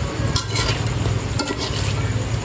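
Chicken adobo sizzling in a pan as its sauce is cooked down almost dry, with a utensil clicking against the pan a couple of times. A steady low hum runs underneath.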